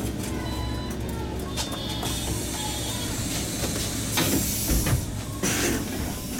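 A MAN Lion's City CNG city bus driving slowly, heard from the cab: a steady low rumble of engine and road. A short burst of hiss comes past the middle and another near the end.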